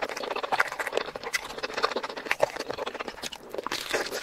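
Close-miked chewing of spicy seafood boil: a steady run of quick, irregular wet smacks and mouth clicks.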